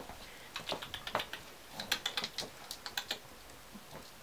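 Pomeranian puppy's claws clicking on a laminate floor as it trots about: irregular runs of quick, sharp taps.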